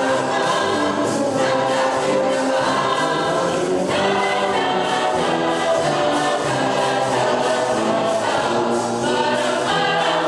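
Boys' choir singing, accompanied by a brass band.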